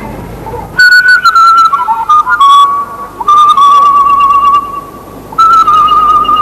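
A flute plays a high melody in three phrases, starting about a second in. The notes are held with a wavering vibrato and slide between pitches.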